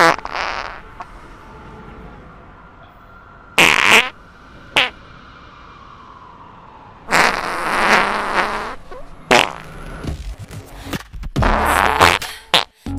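A string of fart sounds: a short one at the start, another about three and a half seconds in with a quick one just after, a long drawn-out one about seven seconds in, then a run of short ones near the end.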